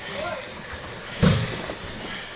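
A single heavy thud on the judo mat a little over a second in, with voices in the background.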